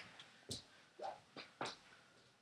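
Faint footsteps as a person walks away across a room: a few soft, separate steps and creaks about half a second apart.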